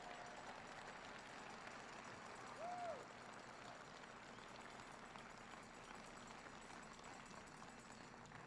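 Near silence: faint room noise of a large stadium hall, with one brief faint pitched sound, rising then falling, a little under three seconds in.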